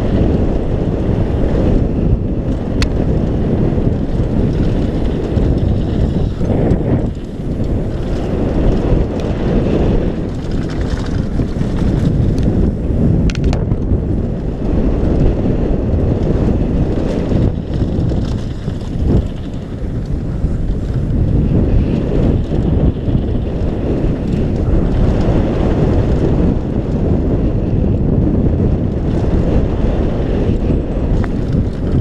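Wind buffeting a helmet-mounted action camera's microphone at downhill mountain-bike speed, mixed with the rumble of tyres and the rattle of the bike over a dirt and gravel trail. A few sharp clicks stand out from the steady noise.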